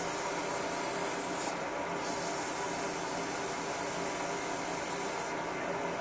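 Small wood lathe running steadily with a pen blank on its mandrel, while a paper towel loaded with cut-and-polish compound rubs against the spinning blank with a soft hiss. The hiss swells briefly about a second and a half in and again near the end.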